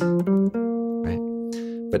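Semi-hollow electric guitar playing a quick rising run of a few single notes, then letting the last one ring and slowly fade. It is a minor melodic structure over G minor built strictly from the chord's own tones.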